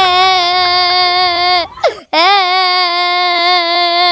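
A child crying in long, drawn-out wails: two held cries of steady pitch, with a short catch of breath between them about two seconds in.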